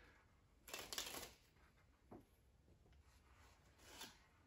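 Near silence broken by a few faint, short scratchy strokes, clustered about a second in and once or twice more later: a marker pen writing letters on a playing card.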